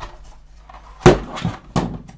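Stiff clear plastic blister packaging cracking as a padlock is pulled out of it: one sharp crack about a second in, then two smaller ones.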